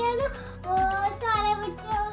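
Background music: a sung melody over steady low notes and an even beat of about two thumps a second.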